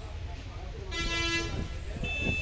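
A vehicle horn gives one short toot, about half a second long, about a second in. It sounds over a steady low rumble.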